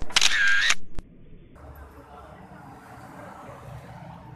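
A loud camera-shutter sound effect lasting under a second, followed by a single sharp click about a second in; then faint outdoor background noise.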